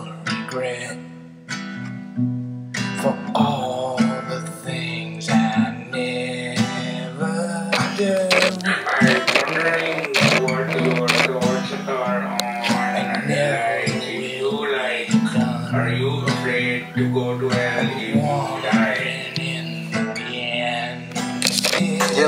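Acoustic guitar music: strummed chords and picked notes over sustained low notes, with a wavering melody line from about eight seconds in.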